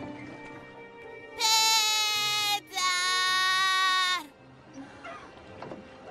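Two long, loud, high-pitched cries from a cartoon voice, each held at a steady pitch, the second sliding down at its end, over background music.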